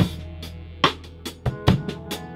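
Band music: a drum kit playing kick and snare hits over held low bass notes, with the bass changing note about one and a half seconds in.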